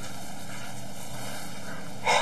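Steady hissing hum of background noise, even throughout, with no distinct events.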